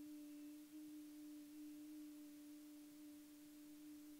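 A patient's voice held on one steady, nearly pure note during laryngoscopy, faint, with little more than a single overtone. The vocal folds close with a posterior glottic gap (hiatus posterior).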